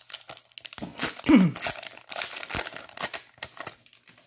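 Baseball card pack wrapper being torn open and crinkled by hand: a dense run of crackles and rips, with a brief falling tone about a second in.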